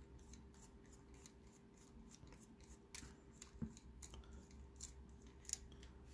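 Faint, irregular metallic clicks and scrapes, a few a second, from a screwdriver tip working inside a brass padlock's body as the lock is taken apart.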